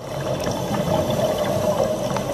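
Underwater ambience from a scuba dive clip: a steady rushing water noise with a low hum, fading in at the start.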